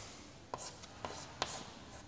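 Chalk writing on a chalkboard: faint scratching strokes with a couple of sharp taps of the chalk, about half a second and a second and a half in.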